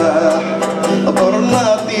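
Live Algerian folk music from a small ensemble: oud and other plucked strings over a regular hand-drum beat, with a bending melody line on top.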